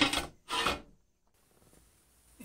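Two short scrapes of steel plate sliding on a steel workbench in the first second, then silence.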